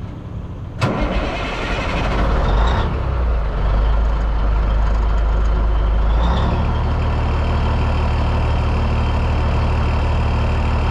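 1984 Peterbilt 362 cabover's 400-horsepower Caterpillar diesel starting: a sharp click about a second in, then the engine catches and runs loud and uneven for several seconds before settling into a steady idle about six seconds in.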